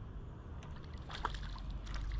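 Small splashes at the water surface from a hooked roach being played on a pole, a few of them in the second half, over a low rumble that builds toward the end.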